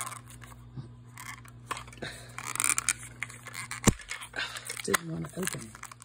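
Handling of a small plastic toy capsule in its printed plastic wrapper: crinkling and scattered light clicks as it is worked open, with one sharp click about four seconds in.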